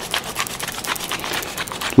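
Hand pepper mill grinding peppercorns: a rapid, continuous crackling rasp of many small clicks.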